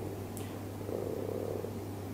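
A pause in a man's speech: a faint, low vocal murmur of hesitation about a second in, over a steady low electrical hum.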